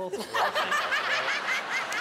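Theatre audience and judges laughing together, a dense wave of many overlapping laughs that breaks out about a third of a second in.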